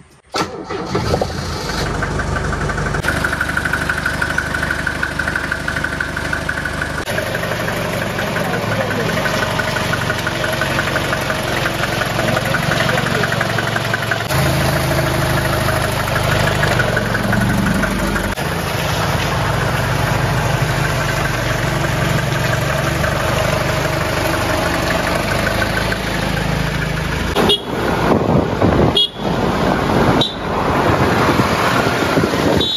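Mercedes-Benz W123 200D's four-cylinder diesel engine started with the key about a second in, then running steadily.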